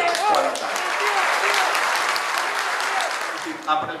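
Crowd applauding: a dense, steady clapping that dies away about three and a half seconds in.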